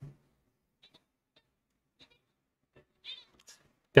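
A short, faint high-pitched animal call about three seconds in, like a mew, among a few small clicks in a quiet room.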